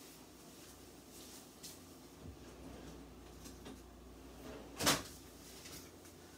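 Quiet kitchen room tone with a few faint handling clicks, then a kitchen cabinet shutting with one sharp knock about five seconds in, as oven mitts and a hot pad are fetched.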